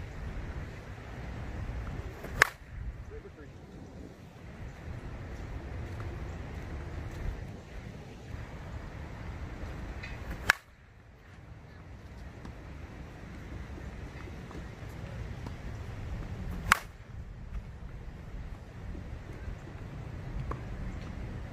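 Three slowpitch softballs struck by a 2021 DeMarini Vanilla Gorilla USSSA bat with a 12-inch APC composite barrel, each a sharp crack with a brief ring, about eight and then six seconds apart.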